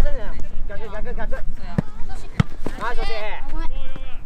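Young players calling and shouting across a youth soccer pitch, with two sharp thuds of a soccer ball being kicked, about half a second apart, near the middle.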